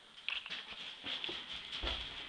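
A soft fabric suitcase being pressed down and handled, with rustling and small knocks and a dull thump near the end as it is forced shut.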